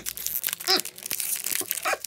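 Foil booster pack wrapper of a Pokémon BREAKpoint pack crinkling and tearing in irregular crackles as it is pulled and worked open, the pack resisting being opened.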